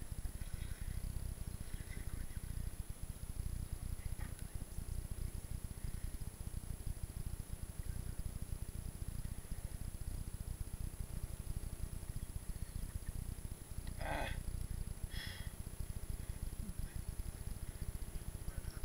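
Steady low rumble of wind and rubbing on the camera's microphone, with two brief higher-pitched sounds near the end.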